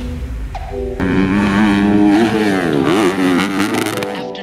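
Dirt bike engine revving hard from about a second in, its pitch holding, then dipping and climbing again as the throttle is worked.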